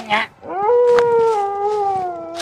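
A long, drawn-out howl begins about half a second in and slowly falls in pitch as it is held.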